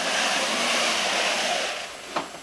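Hunter Douglas Duette cellular blackout shade with LiteRise cordless lift being pulled down by hand, a steady rushing swish that fades out near the end as the shade reaches the bottom.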